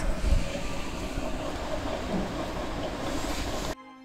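Steady background noise of room tone, even and featureless, with a brief dead-silent gap near the end where the audio cuts.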